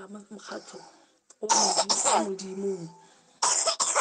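A person coughing twice, once about a second and a half in and again near the end, with a short voiced throat-clearing sound between the coughs.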